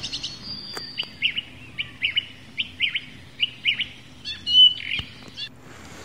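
Bird chirping: a run of short, high chirps in uneven bursts, with a brief thin whistle near the start.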